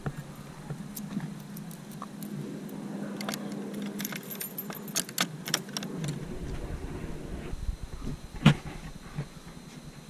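Keys jangling and small metal clicks as a padlock is unlocked and worked off the hasp of a wooden shed door, with one sharper knock near the end.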